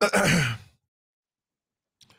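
A man sighing into a close microphone: one breathy exhale with a falling pitch, about half a second long, at the very start.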